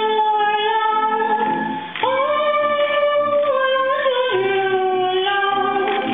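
A female soprano voice singing slow, long held notes, moving to a new pitch about every two seconds.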